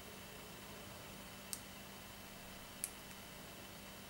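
Two short, sharp clicks, about a second and a half and three seconds in, from fingers handling a small rubber loom band while tying a knot in it, over faint steady hiss and a low hum.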